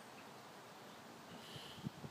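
Faint outdoor garden ambience: a steady low hiss, a brief faint high chirp about one and a half seconds in, and a couple of low thumps near the end.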